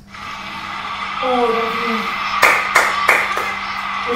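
Four quick hand claps about a third of a second apart, a little past halfway, over a steady hum.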